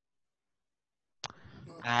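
Dead silence for about a second, then a single sharp click and a faint breathy stretch, and a man's voice starting to speak near the end.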